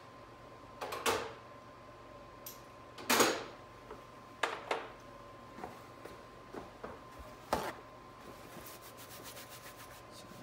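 Metal tools and transmission parts being handled on a workbench: a series of separate sharp clicks and knocks, the loudest about three seconds in, then a quick run of light ticks near the end.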